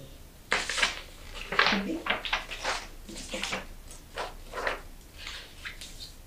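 Sheets of colored paper rustling in a series of short, irregular bursts as they are handled and cut for a paper craft.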